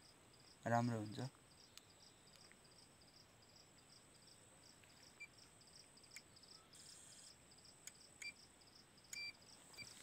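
Faint insects chirping in a fast, even pulse, with a few soft clicks and two short high beeps in the second half.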